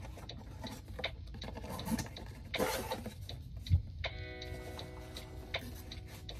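Cardboard camera box being opened by hand: small irregular clicks, taps and rustles as the flap and paperboard insert are pulled and handled.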